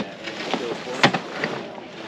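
One sharp clack about a second in, as a rooftop tent's telescoping ladder is swung up and knocks against the tent base and roof rack during pack-up.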